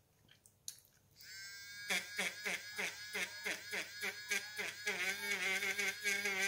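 Small battery-powered electric eraser whirring. It starts about a second in, then its pitch dips about four times a second as the spinning eraser tip is worked against the paper, and it runs steadier, with a wavering pitch, near the end.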